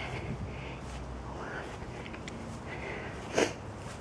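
Soft footsteps on grass and the low rumble of a handheld camera being carried, with one short louder sound about three and a half seconds in.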